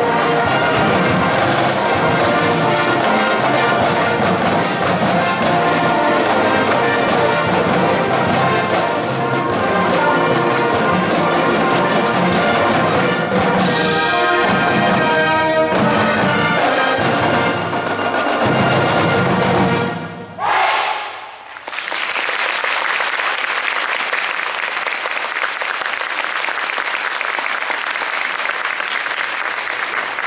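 Marching band of brass and percussion playing a loud full-ensemble passage that ends about twenty seconds in, followed by steady audience applause.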